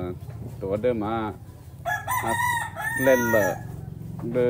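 A rooster crowing once, a high call of about a second and a half starting about halfway through, over a man's speaking voice.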